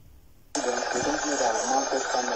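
A man's voice from a video clip played back on a phone, heard through its small speaker. It starts suddenly about half a second in, after a quiet pause.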